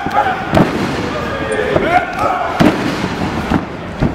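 A few sharp slaps of wrestling strikes, forearms landing on bare skin, the loudest about half a second in and again near three seconds. Shouts and yells come from the wrestlers and crowd around them.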